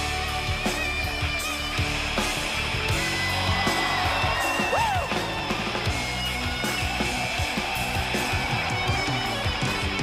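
A live rock band plays an instrumental passage with no vocals: electric guitar over bass guitar and a steady drum beat.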